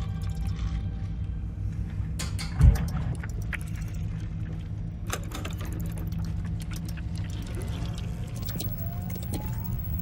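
Film sound design: a steady deep drone under a patter of mechanical clicks and ticks from a laboratory machine, with one heavy thump under three seconds in and faint rising tones near the end.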